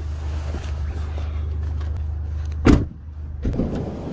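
A steady low rumble, then a van's cab door slammed shut with one loud thud a little under three seconds in.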